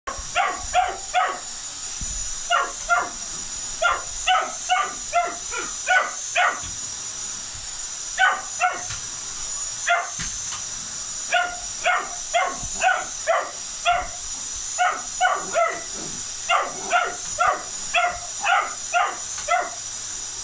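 English Springer Spaniel puppy barking in quick bouts of two to four barks a second at a running cylinder vacuum cleaner. Under the barks the vacuum motor gives a steady high whine.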